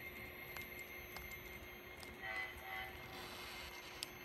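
HO scale model freight train rolling past with light clicks from the wheels on the track, and two short blasts of the model locomotive's horn a little over two seconds in.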